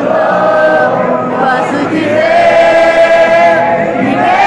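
A large congregation singing a hymn together, many voices in unison. A long held note runs through the second half.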